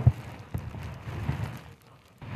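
Soft rustling and a few dull, irregular knocks of clothing and gear rubbing against a body-worn camera as the officer holds his aim, over faint room noise.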